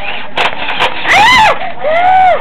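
A young child's high-pitched cries: two long calls that rise and fall in pitch, after two sharp clicks.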